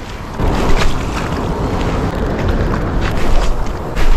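Wind buffeting the camera's microphone over harbour water lapping at shoreline rocks, with a scattering of light clicks.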